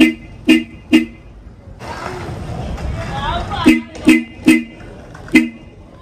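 Seger dual loud horn on a Honda Click 125i scooter giving short, shrill, very loud beeps. There are three quick beeps in the first second, then after a pause of about two and a half seconds, four more short beeps.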